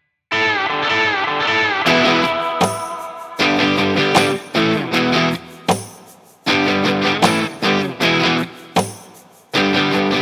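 Background music led by plucked electric guitar, playing rhythmic phrases that start just after a brief silence at the opening.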